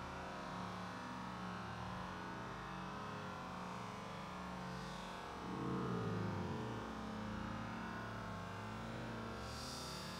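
A steady low mechanical hum with a few held tones, swelling briefly a little past halfway through.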